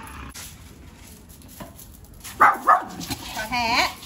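A dog barks twice in quick succession, sharp and loud, a little past halfway, then gives a short wavering whine just before the end.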